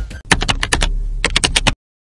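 Computer keyboard typing sound effect: a quick run of about a dozen key clicks that cuts off suddenly shortly before the end.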